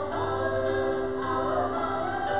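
Live worship music: two women singing together into microphones, with sustained held notes over a piano accompaniment.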